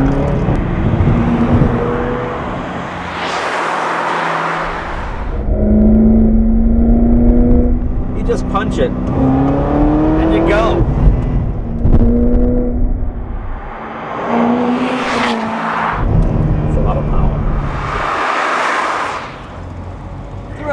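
2009 Corvette ZR1's supercharged 6.2-litre V8 accelerating hard through the gears. The engine note climbs and drops back at each shift, with surges of rushing noise, and the valved exhaust opens above 3,000 rpm.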